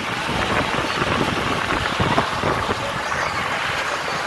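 Wind rushing over the microphone together with the running and rattling of a pickup truck driving over a rough dirt road, heard from its open cargo bed: a steady noisy rush with small irregular jolts.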